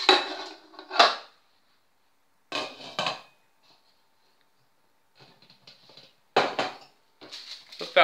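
A metal pudding mould set down inside a stainless steel pot and the pot's glass lid put on: several separate metallic clanks with a short ring. There are two near the start, two more about three seconds in, and one late.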